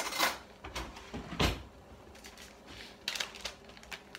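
Handling noises: a clear plastic bag of dried marshmallow root crinkling as it is lifted and opened, with a few knocks, the loudest about a second and a half in and a quick cluster near the end.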